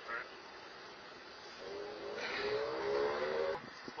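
A steady engine hum over faint hiss, most likely a passing vehicle. It swells for about two seconds from midway and drops away shortly before the end.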